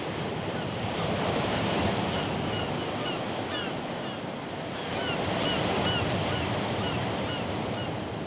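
Steady rushing noise like surf, with a series of short high chirps through the middle, which cuts off suddenly just after the end.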